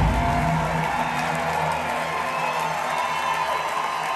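The live rock band's final chord dies away in the first second, and a theatre audience cheers, whoops and applauds as the song ends.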